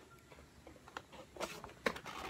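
Soft handling noises of a cardboard shipping box being picked up and opened: a few short taps and rustles, starting about a second in.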